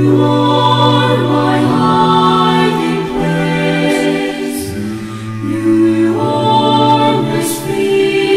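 Music: a choir singing long, held chords in a slow Christian song.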